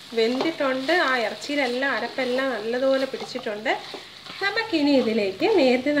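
Mutton pieces sizzling and frying in oil in a wok, a wooden spatula stirring and scraping them, with a person's voice talking over it.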